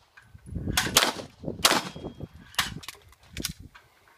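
Pistol fired several times at a steady pace, about one shot a second, with the last two in quick succession, each shot ringing on briefly after it.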